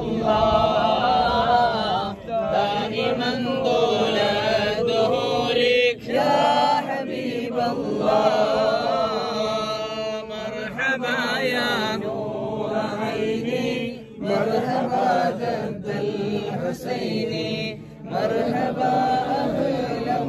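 A group of men chanting Arabic devotional verses together in long, melodic phrases, with brief pauses for breath between lines.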